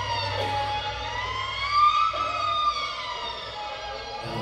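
Violin with live electronics in a contemporary piece, holding a tone rich in overtones that slides slowly down, up and down again like a siren, over a low steady drone that stops about two-thirds of the way through.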